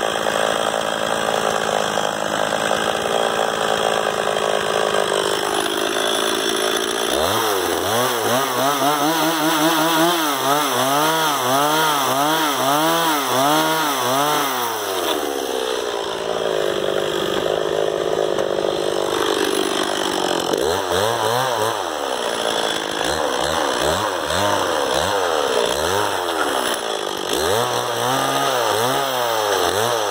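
Stihl two-stroke chainsaw running continuously and cutting into a softwood log, its engine pitch rising and falling again and again as the throttle and cutting load change.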